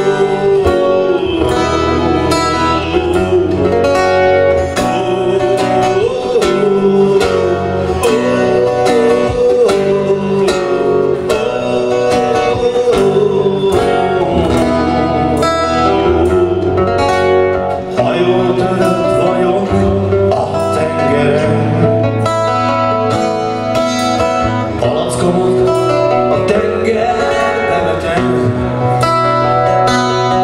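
A live band performing a song: a male singer over guitar, with a steady beat. It is heard through a camcorder's built-in microphone from the crowd.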